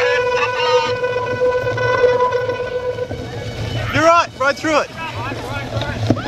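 Cyclocross race heard from a bike-mounted camera: a steady low rumble of tyres in mud and wind on the microphone, under a held horn-like tone for about the first three seconds. About four seconds in come short rising-and-falling shouts.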